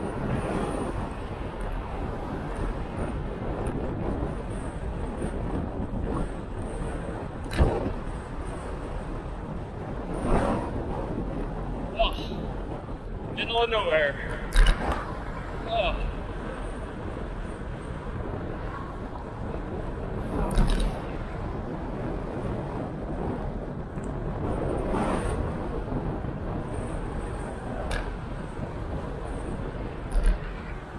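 Wind buffeting the microphone of a handlebar-mounted action camera on a moving bicycle, a steady rushing noise with a few sharp knocks, with a short exclamation about halfway through.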